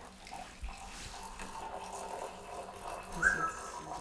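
Water poured from a kettle into a mug. A short squeak about three seconds in.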